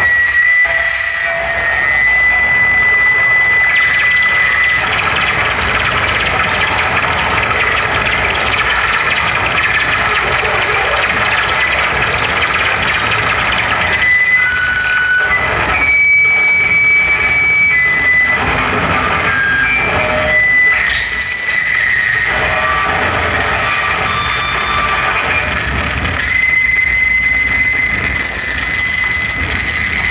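Harsh noise played live on effects pedals and electronics: a loud, dense wash of distorted noise with steady high feedback tones over it. About two-thirds of the way in a shrill tone sweeps up, holds, and slides back down near the end.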